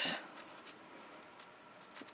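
Faint rubbing and rustling of a thin metal cutting die being slid over textured cardstock by hand, with a couple of light ticks.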